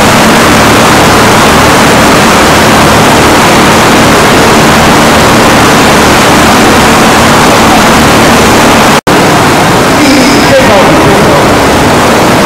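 Loud, steady rush of churning and splashing water in a studio water tank worked up to look like a storm at sea. It cuts out for an instant about nine seconds in.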